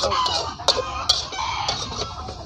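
Metal spatula clicking and scraping against a steel wok while cassava leaves are stir-fried, a few sharp clicks, with chickens clucking in the background.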